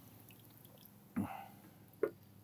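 Thick soup being ladled from a metal pot onto a metal plate, with faint, soft liquid sounds.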